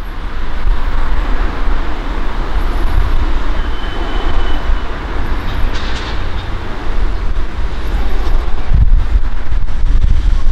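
Class 43 HST power cars approaching from a distance, their engines a steady low rumble under a noisy hiss that grows a little louder near the end.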